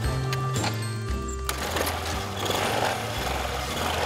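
Background music, and about a second and a half in, a small old step-through motorcycle engine catches after being kick-started and keeps running; the old machine is hard to start.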